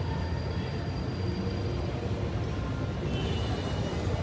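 Steady low rumble of outdoor urban background noise in a pause between speech, with no distinct events.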